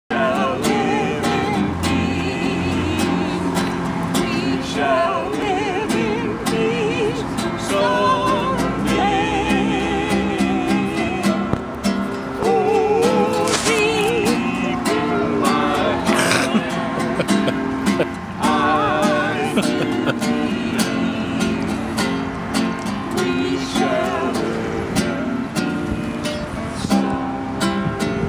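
Acoustic guitar strummed in steady chords, with a man singing a song over it.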